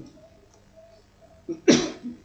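A person sneezing once near the end: a short breath in, then a loud, sudden burst.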